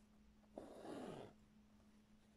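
Embroidery thread pulled through taut fabric held in a hoop: one faint, brief rasp about half a second in, lasting under a second.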